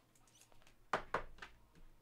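Trading cards and a clear plastic card sleeve being handled, a few small clicks and rustles about a second in.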